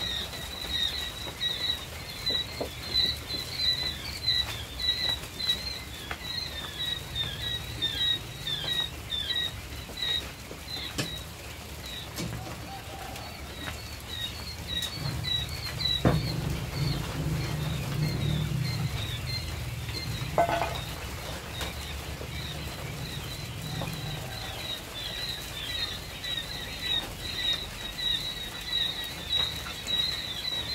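Many quail peeping continuously in short, high chirps, a dense overlapping chorus from the caged flock. A low rumble swells under it through the middle.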